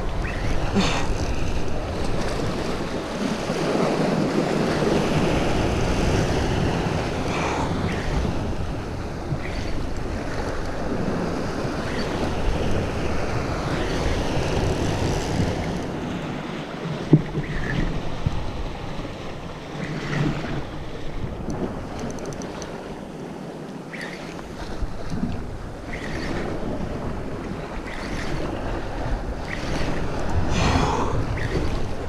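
Wind buffeting the microphone over open sea, with waves and water sloshing underneath. A few faint clicks come through, one sharper tick in the middle.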